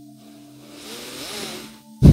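Faint background noise in a pause between speech: a steady low hum, with a soft rushing noise that swells and fades in the second half.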